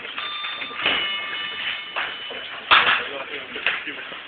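A steady electronic signal tone, several pitches sounding together, lasts about two and a half seconds. A loud sharp noise follows near three seconds in, and a smaller one a second later.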